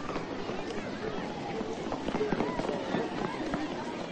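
Many children's voices shouting and chattering at once, with the scuffle of running footsteps.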